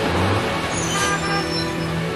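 City street traffic, vehicles passing with a brief high hiss about a second in, over steady background music.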